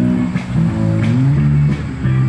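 Acoustic guitar played live, a run of single picked notes changing quickly.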